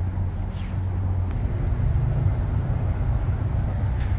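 Low, steady rumble of city road traffic, growing a little louder about a second and a half in as a vehicle passes.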